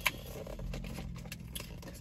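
A small cardboard cookie box being handled and opened by hand: a sharp click at the start, then scattered light clicks and scratches of the cardboard flaps.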